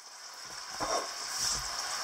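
Faint sizzling of beef stir-frying in a hot wok, growing louder as the wok comes closer.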